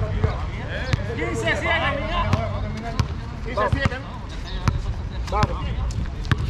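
A basketball bouncing on a concrete court as it is dribbled: sharp single thuds, unevenly spaced a little under a second apart. Players' voices call out between the bounces.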